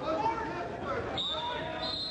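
Spectators and coaches calling out during a college wrestling match in a gym. A high steady tone starts a little past halfway through.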